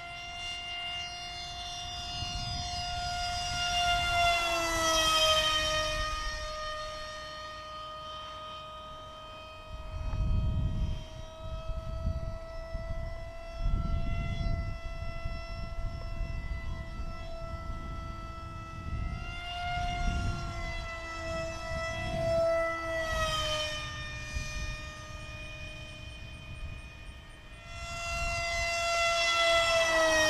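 Radio-controlled F-5 Tiger model jet flying, its engine a steady high whine. The pitch sweeps down on each flyby: about five seconds in, around twenty and twenty-three seconds in, and again near the end. Wind buffets the microphone in places.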